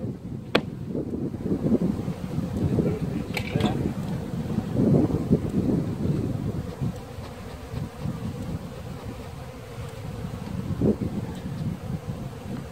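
Honeybees buzzing around an open hive, a steady, wavering hum, with a few sharp clicks from hive parts being handled.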